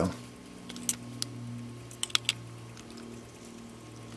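Faint steady low hum with five light, sharp clicks: two about a second in and a quick run of three around two seconds in.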